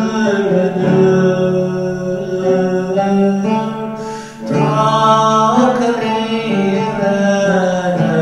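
Male voice singing a Turkish Sufi ilahi in makam segah, with long held notes, to a plucked lavta (Turkish fretless lute). The singing breaks off briefly about four seconds in, then carries on.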